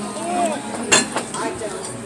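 A sharp clink of tableware on a plate about a second in, with a smaller knock after it, among low voices at a dining table.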